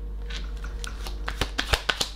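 A deck of tarot cards being shuffled and handled: a run of quick, light card clicks that come thicker in the second second.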